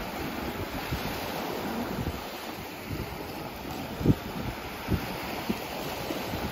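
Small sea waves breaking and washing in the shallows, with wind buffeting the microphone in low rumbles and a couple of brief bumps about four and five seconds in.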